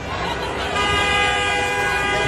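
A vehicle horn gives one long steady blast, starting just under a second in, over a crowd shouting and talking.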